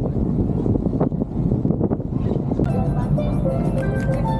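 Steady low rumble aboard a tour boat under way. About two-thirds of the way in, music starts playing over it.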